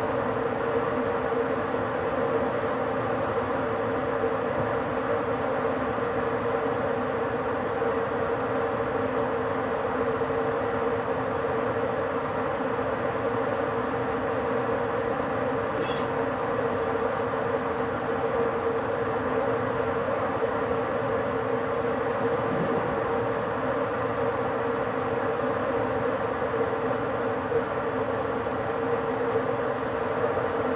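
Steady running noise of an ÖBB electric InterCity train heard inside the driver's cab as it slowly gathers speed, with a constant hum and rail rumble. A couple of faint ticks come about halfway through.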